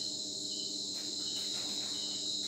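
Crickets trilling steadily, a continuous high-pitched chirring.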